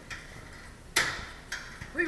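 A sharp click about a second in, then a fainter click about half a second later, over quiet room noise.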